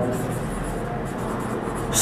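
Steady room noise between spoken phrases: an even hiss with a low hum underneath.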